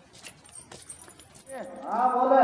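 A few faint, light footsteps on a brick-paved lane. Near the end a man's voice starts to speak.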